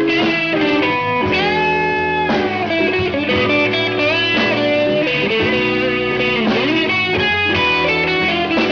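Live blues band playing an instrumental passage of a slow blues, led by electric guitar holding and bending notes over bass and drums.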